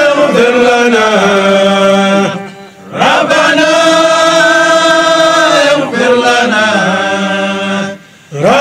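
Men's voices chanting a Sufi dhikr in long, held, wavering sung phrases. The chant breaks off briefly about two and a half seconds in, then resumes.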